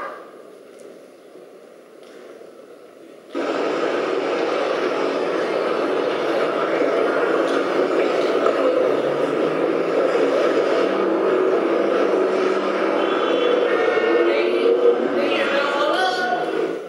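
A dense babble of many voices talking at once, starting suddenly about three seconds in and holding steady at an even level.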